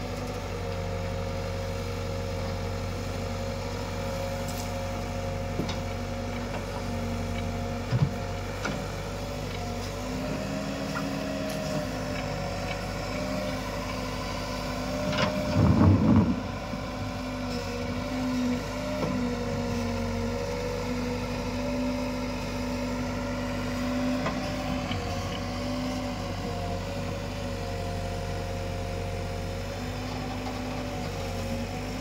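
Escorts Digmax backhoe loader's diesel engine running steadily as the backhoe digs, its note wavering slightly under hydraulic load. There is a sharp knock about a quarter of the way in, and a louder crunching clatter about halfway through as the bucket bites into stony soil.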